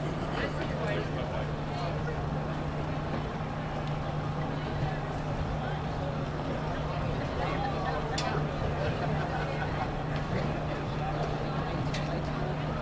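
Indistinct chatter of spectators' voices, with no clear words, over a steady low hum.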